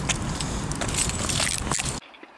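Small metal pieces jingling and clicking over a steady rush of outdoor noise.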